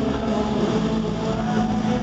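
Live rock band playing at full volume over a stadium PA, with electric guitars holding steady chords.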